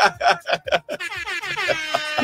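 Laughter, then about a second in an air-horn sound effect starts and holds one steady tone.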